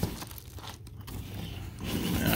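A padded plastic mailer being pulled out of a cardboard shipping box: quiet scraping and crinkling of plastic against cardboard, with a light knock at the start.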